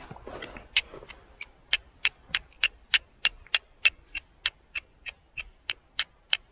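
Flint and steel: a hand-held steel fire striker scraped down against a flint again and again, a regular run of sharp clicks about three a second, striking for sparks.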